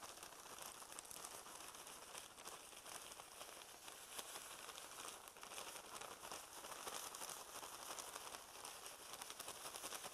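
Faint crinkling of a plastic zip-top bag as crushed crackers are shaken out of it, with crumbs pattering onto fish fillets in a glass baking dish.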